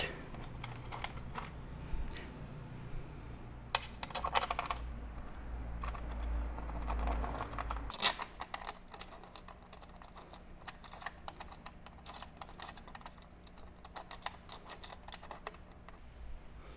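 Scattered light clicks and taps of screws being started by hand and the wooden stand and keyboard being handled, with a few sharper knocks. A low rumble runs under the first half and stops about halfway through.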